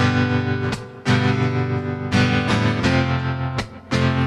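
Acoustic guitar strummed, chords ringing out, with short breaks in the sound at chord changes about a second in and again near the end.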